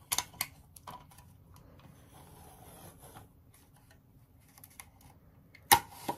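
Washi tape being pulled from its roll in a clear acrylic holder and torn off by hand: a few light clicks, then soft rustling, with one sharp knock near the end.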